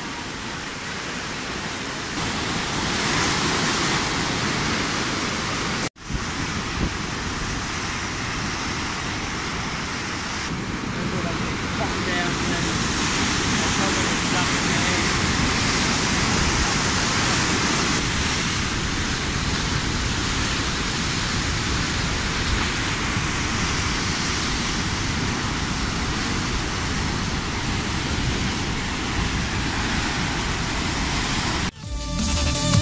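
Waikato River's white-water rapids at Huka Falls rushing through a narrow rock gorge, a steady roar of water. The sound cuts out for an instant about six seconds in and comes straight back.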